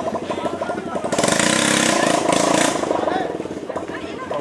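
A motorcycle passing close by: a loud engine rush comes in suddenly about a second in, holds for about two seconds, then fades. It sounds over the chatter of a crowd.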